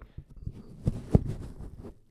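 Handling noise of a large foam windscreen being pushed onto a Shure MV7 microphone: rubbing and rustling of the foam against the mic, with two soft knocks a little after a second in.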